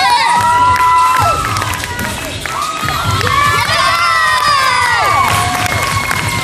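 Many children cheering and screaming together, high voices holding long shouts that slide down in pitch. The shouting comes in two loud waves, one over the first second and another from about three to five seconds in.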